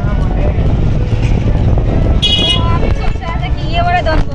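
Street traffic heard from a moving cycle rickshaw, under a continuous low rumble of wind and road on the microphone. A short, high horn toot comes a little over two seconds in, and voices near the end.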